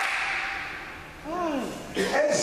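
A short vocal sound that glides up and then down in pitch, voiced through a hand-held microphone, after a breathy hiss that fades out.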